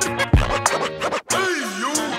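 Turntable scratching over a hip hop beat: a scratched sample swoops in pitch, dropping and rising back near the end, over a drum kick early on.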